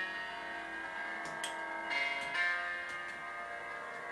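Quiet instrumental accompaniment to an opera aria, with sustained chords ringing and slowly fading while the singer rests between phrases.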